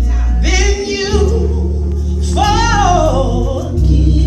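A woman singing gospel into a microphone in two drawn-out phrases with bending, held notes, over sustained low accompaniment chords that change a few times.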